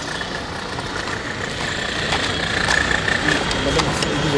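Steady engine noise of an idling vehicle, with a low rumble and a faint steady high tone.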